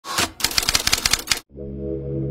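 Typewriter key-clicking sound effect: a quick even run of about a dozen clicks, about twelve a second, that cuts off about one and a half seconds in. Intro music with held notes starts right after.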